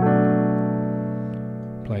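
Piano playing a B minor seven chord (B, F sharp, A in the left hand, D in the right), struck once at the start and held, slowly fading.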